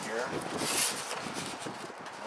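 A styrofoam packing sheet scraping and rustling against cardboard and plastic bags as it is pulled out of a box. There is one brief, bright scraping rustle about half a second in, then softer handling noise.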